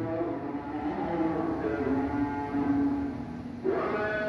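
A man's voice holding a long, low wordless tone that steps down slightly in pitch a couple of times, then stops about three and a half seconds in.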